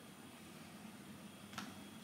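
Near silence: faint room tone with a low steady hum and hiss, and a single brief faint click about one and a half seconds in.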